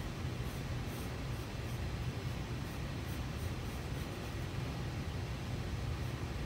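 Faint, irregular scratching of drawing on folded paper held against a whiteboard, over a steady low room hum.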